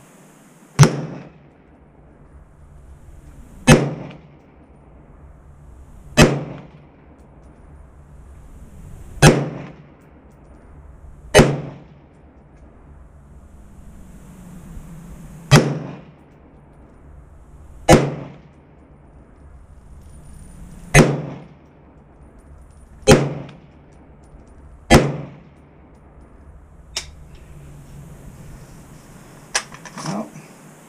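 Ten semi-automatic shots from a Ruger SFAR .308 rifle set to gas setting 2, fired slowly, about two to three seconds apart, each crack followed by a short ringing tail. The rifle fires Winchester white box 149-grain full metal jacket ammunition, and its bolt fails to lock back on the empty magazine after the tenth shot.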